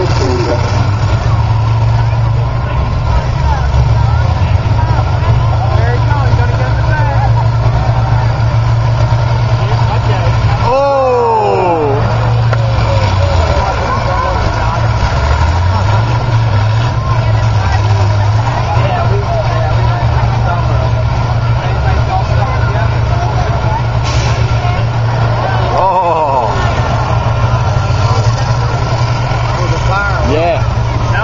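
Combine harvester engines running loud and steady, their pitch dipping and climbing back again between about 13 and 17 seconds in as the machines push against each other in a demolition derby.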